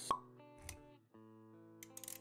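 Motion-graphics intro sound effects over soft background music: a sharp pop just after the start, then a short low thud about two-thirds of a second in, with quiet held and plucked music notes underneath.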